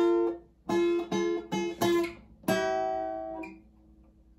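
Acoustic guitar being strummed: about six short chord strokes, the last one left to ring and slowly fade.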